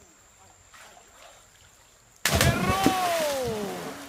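A sudden loud noise about two seconds in, carrying a person's long yell that falls in pitch over about a second and a half and fades away.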